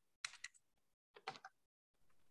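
Faint typing on a computer keyboard, heard over a video call: two short runs of key clicks about a second apart.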